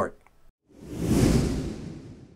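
A whoosh transition sound effect that swells in about half a second in, with a low rumble under a hiss, and fades away over about a second.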